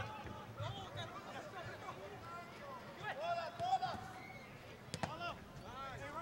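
Faint, distant shouts and calls of players across an open soccer pitch over quiet outdoor ambience, with a single sharp knock about five seconds in.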